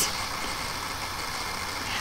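Steady room tone in a pause between speech: an even hiss with a faint low hum, no distinct event.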